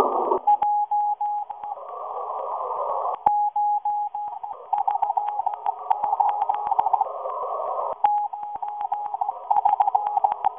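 Morse code from a Russian agent shortwave transmitter heard on a radio receiver: a single keyed tone sounds in runs of even dashes, through narrow-band hiss, swelling noise and frequent static crackles.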